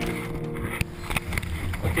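Rough onboard-camera audio inside a capsized ocean-racing trimaran: a rushing hiss with a few sharp knocks and thumps, over a steady music bed. A man says "okay" at the very end.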